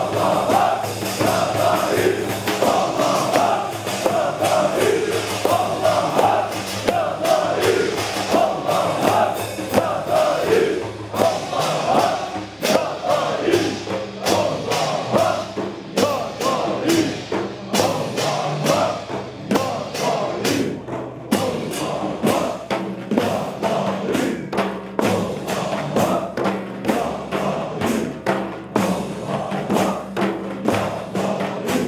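A group of men chanting a rhythmic Sufi dhikr in unison, their voices rising and falling with each bow, over frame drums struck in a steady beat that becomes more prominent in the second half.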